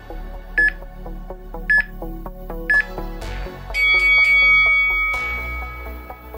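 Workout interval timer beeping over electronic background music: three short beeps about a second apart counting down, then one longer, higher beep marking the end of the round.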